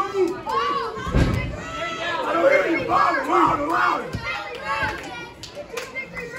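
Small crowd of spectators, many of them children, shouting and calling out over one another, with a thud about a second in.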